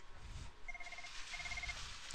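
Faint electronic telephone ringer giving two short trilling rings in quick succession, a double ring, over low room hiss.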